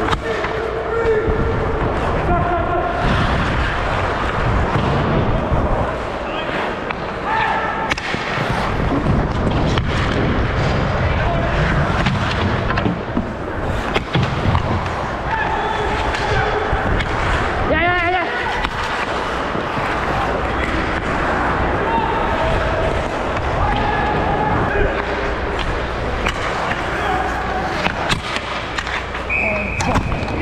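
Ice hockey play heard up close: skate blades scraping on the ice, sharp clacks of sticks and puck, and scattered shouts from players. A short steady whistle tone sounds near the end as the goalie covers the puck, the signal that play is stopped.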